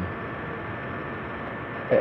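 Steady background room noise: an even hiss with a faint hum. A man's voice starts a word right at the end.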